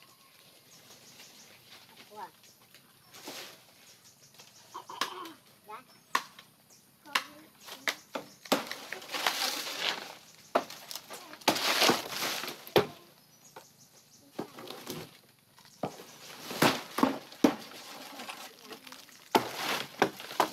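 Fan-palm fronds being chopped from a tree: sharp chop strikes and the dry rustling of the big leaves as they come down, in several loud bursts.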